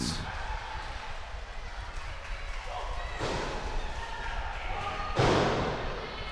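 Hall ambience and crowd murmur around a wrestling ring, with a soft thud about three seconds in and a louder, slam-like impact lasting under a second about five seconds in.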